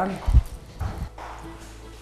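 Footsteps on a hard floor: two heavy steps about half a second apart, then quieter steps, with faint background music.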